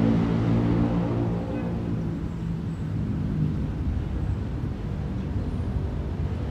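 A low, steady drone of several layered hum tones, strongest in the first couple of seconds and then a little weaker.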